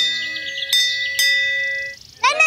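Bright metal chimes struck three times, each strike ringing on over the last, the ringing dying away near the end.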